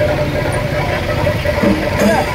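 Busy street ambience: a steady low rumble of traffic under the chatter of a crowd of people walking together.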